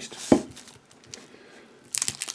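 A dense, plastic-wrapped block of compressed figs and almonds knocks once onto a ceramic plate about a third of a second in, followed by faint rustling of its cling-film wrapper as it is handled, and a sharp crinkle of the plastic near the end.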